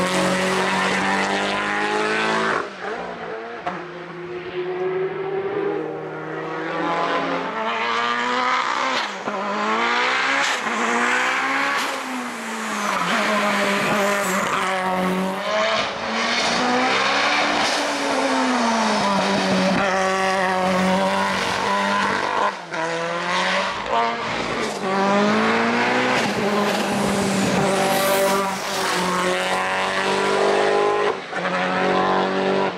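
Lancia Delta Integrale Evo hill-climb race car driven flat out through tight bends. The engine revs climb, drop sharply at each gear change and lift-off, then climb again, several times over. Many sharp cracks from the exhaust are heard on the overrun.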